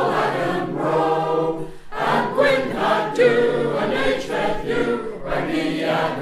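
Choir singing the chorus of a folk song in Cornish, in sustained phrases with brief breaths between lines.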